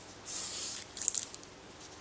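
A paper strip being folded by hand: a brief rustle about a third of a second in, then a short run of crackles around one second in as the fold is pressed down.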